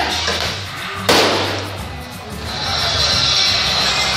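A single loud bang from a staged explosion effect about a second in, dying away over about a second, over loud show music.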